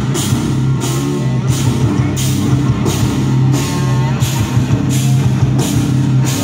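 Live rock band playing an instrumental passage: electric guitar and bass over a drum kit, with cymbals struck on an even beat of a little under two a second.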